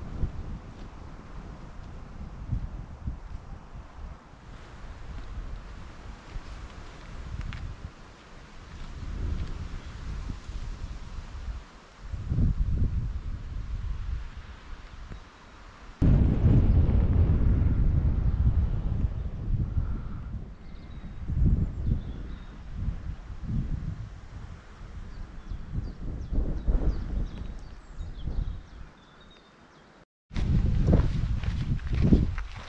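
Wind buffeting the microphone in uneven gusts, a low rumble that becomes suddenly much louder about halfway through, on the exposed summit.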